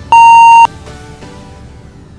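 Workout interval timer giving a single long beep of about half a second, pitched higher than the short countdown beeps just before it; it marks the end of the work interval and the start of the rest. Background music plays quietly underneath.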